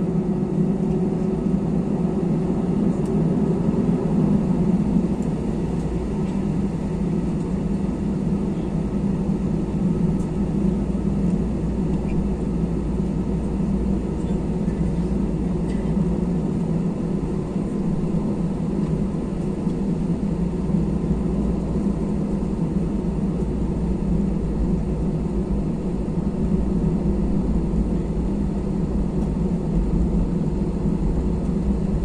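Jet airliner's engines running at taxi power, heard from inside the passenger cabin as a steady low hum and rumble while the plane taxis.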